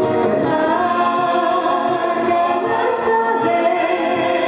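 Live singing with two acoustic guitars: a vocal line of held, gliding notes over the guitar accompaniment.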